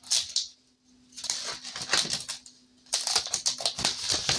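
Rustling and clicking of a cardstock envelope being handled over a desk, in two clusters of crisp short noises, with a faint steady hum underneath.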